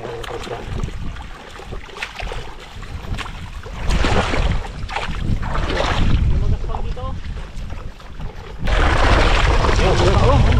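Shallow pond water sloshing and splashing around a wader's legs and a gill net being worked by hand, with wind buffeting the microphone, much heavier for the last second or so.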